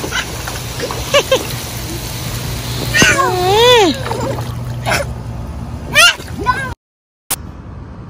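Water splashing in a shallow inflatable kiddie pool as a toddler kicks through it, with a small child's high, wavering squeal lasting about a second, about three seconds in.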